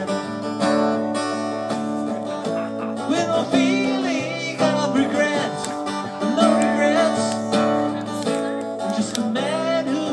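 Acoustic guitar playing an instrumental passage between vocal lines, sustained notes with some sliding and bending in pitch.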